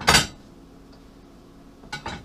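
Ceramic dinner plates clinking together once, sharply, as they are lifted from a stack, with a faint click near the end.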